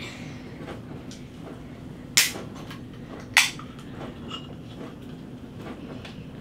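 Ring-pull can of sparkling coconut water being opened: two short, sharp cracks of escaping gas about a second apart as the tab is lifted and pushed down.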